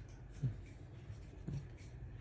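Faint rustling of hands handling a hand-forged steel knife with a wooden handle, over a low steady room hum. There are two soft, brief sounds, about half a second in and again about a second and a half in.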